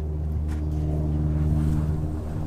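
A running engine or motor giving a steady, even low hum with no change in pitch.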